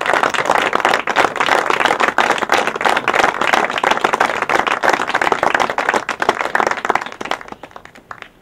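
Audience applause: many people clapping steadily, dying away about a second before the end.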